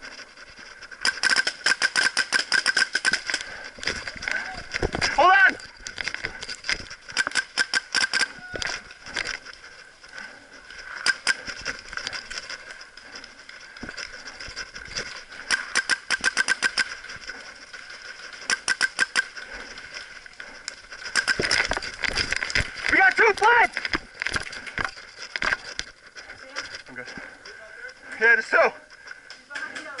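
Paintball markers firing in rapid strings of shots, several bursts of quick cracks coming and going, with shouts heard in between.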